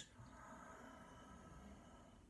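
Near silence: room tone, with a faint steady hum.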